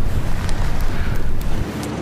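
Wind rushing over the microphone on a boat at sea, with motor and water noise beneath. About one and a half seconds in, the heavy low rumble drops away, leaving a steadier hum.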